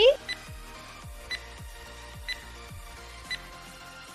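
Countdown timer sound effect ticking about once a second with short, high ringing blips, over soft background music with a low, steady pulse.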